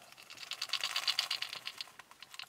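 Rapid mechanical clicking, about ten clicks a second, lasting a little over a second.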